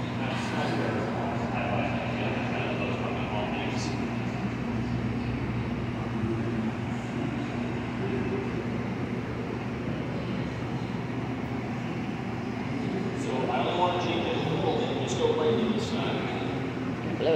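Steady roar and hum of a glass studio's gas-fired glory hole and ventilation, with voices rising in the background near the end.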